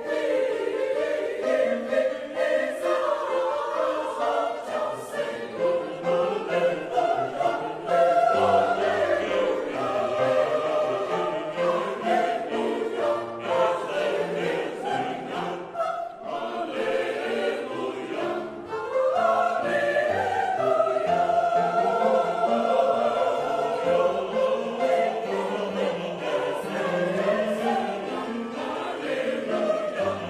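Mixed church choir of men's and women's voices singing a sacred choral piece in long, sustained phrases, with short breaks between phrases about halfway through.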